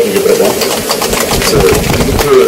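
A man's voice over a PA system, chanting in drawn-out, wavering tones, as he does in the repeated "hello, hello" calls either side. A crowd claps along in quick, uneven claps.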